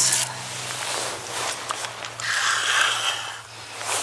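Handling noise as a hooked trout is brought up to an ice-fishing hole: rustling and scraping, with a louder hissing rush in the second half.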